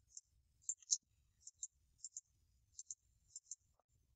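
Faint computer mouse clicks, mostly in quick pairs, coming every half second or so.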